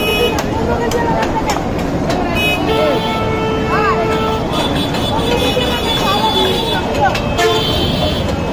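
Busy roadside market noise: traffic and voices, with a vehicle horn sounding one steady tone for about a second and a half, starting around three seconds in. A few sharp clicks stand out among the din.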